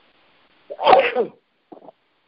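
A person sneezing once, about a second in, followed by a brief faint vocal sound.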